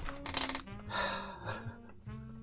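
Jazz background track with brass and saxophone, with a brief clatter about half a second in.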